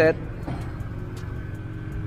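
Lexus IS air suspension airing up to a preset ride height: a steady low mechanical hum with a few faint clicks while the air bags fill.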